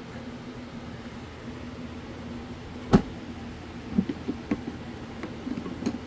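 Plastic ammo box being shut: one sharp snap of the lid about halfway through, then several lighter clicks and taps as the latch is handled. A low steady hum sits underneath.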